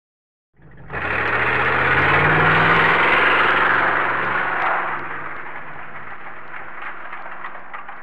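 A car engine starting up abruptly about half a second in and running loudly, then dropping back about five seconds in and fading away, like a car pulling off.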